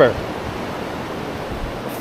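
Steady wash of ocean surf on the beach: an even hiss with no distinct break standing out.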